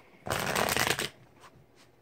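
A deck of cards being riffle-shuffled: one quick rapid flutter of cards lasting under a second, followed by a few faint card taps.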